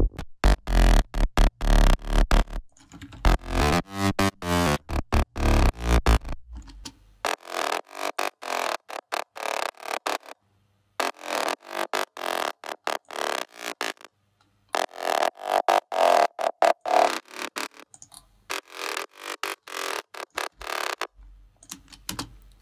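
Synthesizer bass line from a Spire preset, played as a rhythmic run of short notes. For about the first seven seconds deep sub-bass sounds beneath it; after that only the brighter upper bass layer plays, without the lows, and it stops briefly twice.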